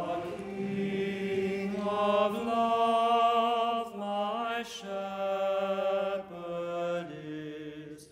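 Voices singing a slow hymn in unison, chant-like, with long held notes that step from pitch to pitch.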